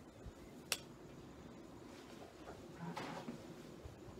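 A single sharp click about three-quarters of a second in, followed by faint handling and rustling sounds near the end, like small objects being moved at a table.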